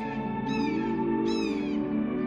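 Soft music with a chipmunk's repeated chirping calls over it, short high notes that each fall in pitch, about one every three-quarters of a second.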